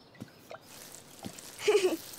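Water from a watering can dripping in a few separate small drops, each a short soft plip, with a brief voice sound near the end.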